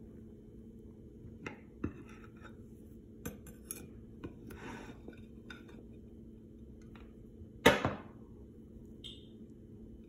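Kitchen knife cutting a soft yeast loaf on a ceramic plate: scattered light clicks and a short scrape as the blade meets the plate, with one sharp clack, the loudest, near eight seconds in.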